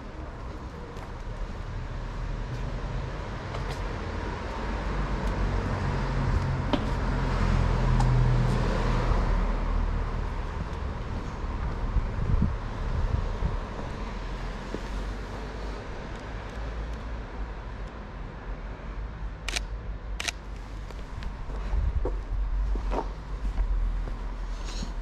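Street ambience with a car passing by, its engine and tyre noise swelling to a peak about eight seconds in and then fading. Two sharp clicks come a little before the end.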